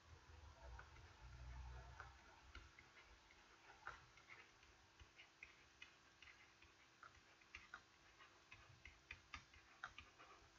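Near silence with faint, irregular ticks of a stylus tip tapping on a tablet as words are handwritten.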